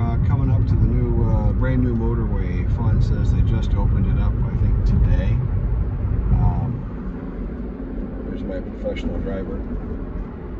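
Car cabin road and engine rumble from a moving car, loud and low, easing off about seven seconds in, with a man's voice over it.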